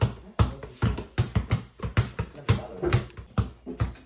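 Several basketballs being dribbled at once on a concrete floor, rapid irregular bounces about four a second, over background music.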